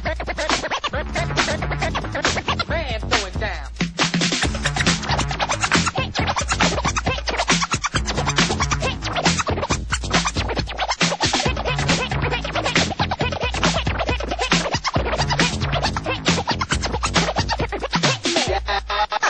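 Freestyle dance-music mega mix with turntable scratching cut in over a fast, steady beat and heavy bass.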